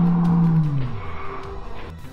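A shouted word played back heavily slowed down, a deep drawn-out voice that holds one low pitch, then slides lower and fades about a second in, with faint music under it.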